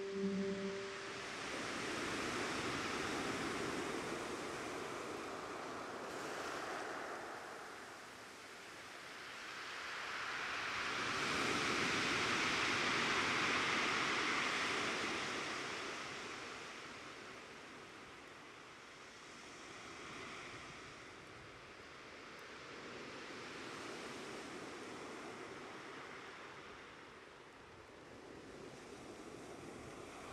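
Soft rushing noise that swells and fades in slow waves every several seconds, loudest about halfway through. A brief musical note dies away right at the start.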